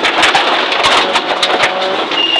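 Subaru Impreza N14 rally car's turbocharged flat-four engine, heard inside the cabin as the car slows on a gravel stage, with many sharp clicks and knocks over a steady noise of tyres and gravel.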